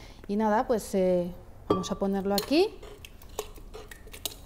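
A woman's speech, then a few light clinks and knocks of a cut-glass bowl against a blender jug as a soaked bread mixture is tipped into it.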